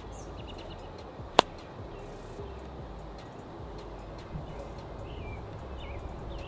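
A golf club striking a baseball: one sharp crack about a second and a half in.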